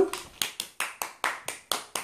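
A woman clapping her hands: about ten quick claps at a steady pace of roughly four to five a second.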